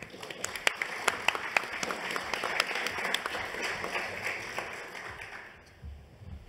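Audience applauding: a burst of many hand claps that starts at once, swells, and fades out shortly before the end.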